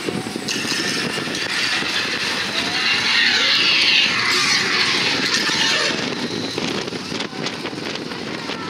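Slinky Dog Dash roller coaster train running along the track: a steady rumble with rushing wind, a little louder around the middle.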